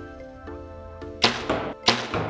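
A Bowtech Fanatic compound bow being shot: two loud, sharp cracks a little over half a second apart, each trailing off in a short hiss, over background music.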